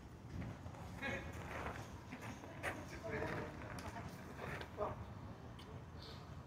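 Faint, unclear voice sounds without distinct words, with a few light clicks scattered among them.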